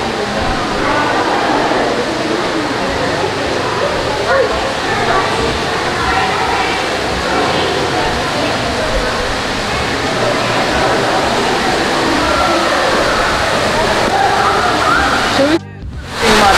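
Steady rushing of an indoor waterfall in a rainforest conservatory, with faint chatter of visitors over it. The sound drops out briefly just before the end.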